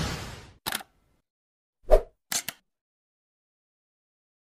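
Edited intro sound effects: a whoosh fading out, then a short click, a louder pop about two seconds in, and two quick clicks just after it.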